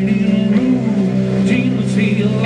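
Live blues band playing an instrumental stretch: guitar and bass guitar holding steady low notes over drums, with a couple of cymbal strikes in the second half.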